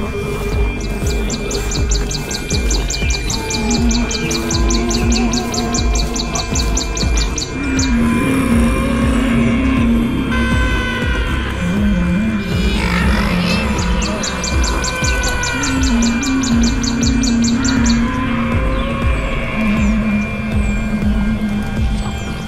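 Suspenseful film score: steady low drum beats under a low melody that steps up and down, with a fast high rattling pulse coming in twice. Bird-like chirps with falling pitch sound in the middle.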